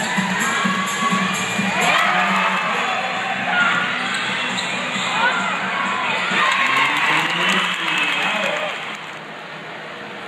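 Live basketball game in an indoor stadium: the ball bouncing on the hardwood court, with crowd shouting and cheering and players' voices calling. The noise drops about nine seconds in.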